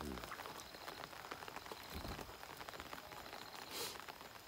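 Faint, steady patter of light rain falling on pond water, with a brief soft hiss near the end.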